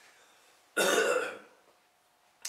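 An elderly man clears his throat once with a short, cough-like burst about a second in, lasting about half a second and louder than his speech around it.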